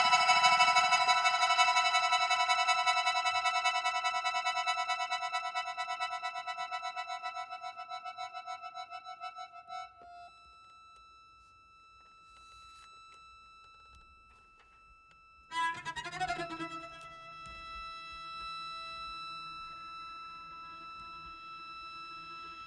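Contemporary chamber music for alto saxophone, cello, accordion and electronics. A held, pulsing chord slowly fades out over about ten seconds, and a few seconds of near quiet follow with only a faint high tone. Then a new sustained chord enters suddenly and holds.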